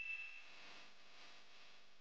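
A high chime tone dying away in the first half second, then faint steady hiss.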